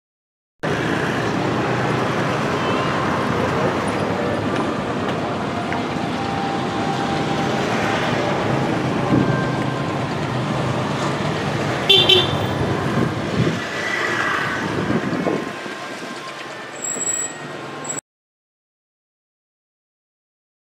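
Outdoor street ambience: traffic running with short horn toots and a murmur of voices. It starts abruptly just after the beginning and cuts off suddenly near the end.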